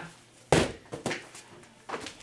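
A man's voice says one short word, "and", about half a second in, within a pause in his talking; the rest is quiet room tone.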